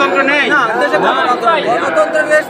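Several men talking loudly at once in a crowd, their voices overlapping.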